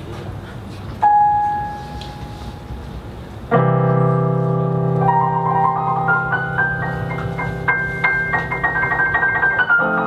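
Digital piano played: a single held high note about a second in, then a full sustained chord from about three and a half seconds, over which a run of single notes steps up and back down.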